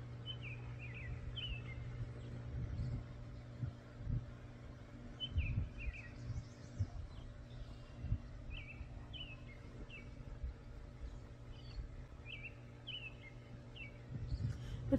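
Birds chirping in short, scattered calls, with a low rumble of wind gusting on the microphone.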